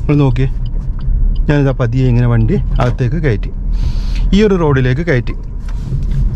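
A man talking over the steady low hum of a Suzuki car's engine and tyres, heard inside the cabin while it drives slowly.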